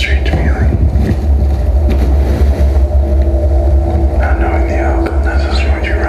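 Loud, crowded venue: a deep, steady bass rumble with people's voices over it, louder about four to five and a half seconds in.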